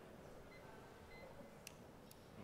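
Near silence: room tone, with a couple of faint brief high tones and a single short click near the end.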